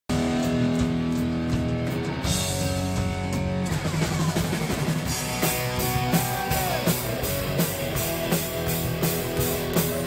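Live rock band with electric guitars playing. Held guitar chords ring out, then the drums come in about halfway through with a steady beat.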